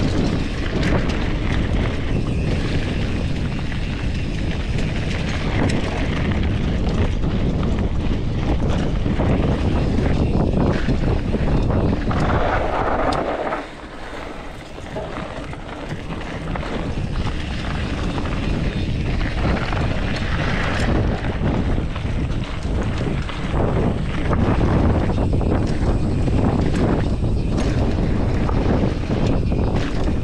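Wind buffeting a GoPro 11's microphone as a Norco Sight mountain bike rolls fast down a dry dirt trail, with the tyres crunching over dirt and leaf litter. The rush eases for a couple of seconds about halfway through.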